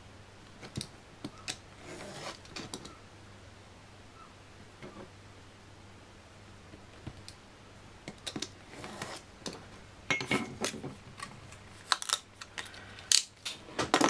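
A retractable craft knife drawn along a steel ruler, cutting thin plastic card into strips on a cutting mat: short scratchy scrapes between light taps and clicks. It grows busier in the second half, ending in a few sharp clicks as the ruler and knife are set down.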